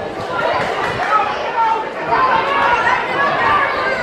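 Indistinct chatter of several people talking over one another, steady throughout.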